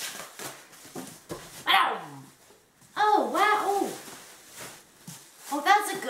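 Plastic wrap crinkling and tearing as a boxed package is unwrapped. Loud high-pitched wordless vocal sounds come over it: a falling wail about two seconds in and a rising-and-falling one about three seconds in.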